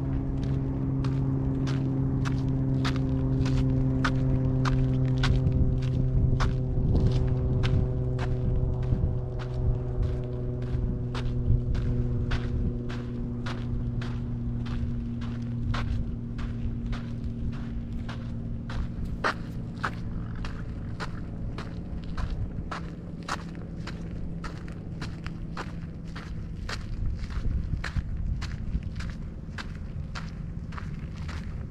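Footsteps of a walker on an outdoor trail, a steady pace of about two steps a second. Beneath them a low engine drone with several pitched tones slowly falls in pitch and fades out about two-thirds of the way through.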